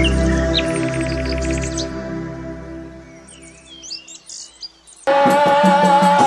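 Intro music of held tones with bird chirps over it, fading out over the first four seconds, while a few chirps linger. About five seconds in it cuts suddenly to loud live group singing over drums and rattles.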